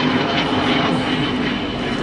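A steady engine drone, with a low hum in the first moment.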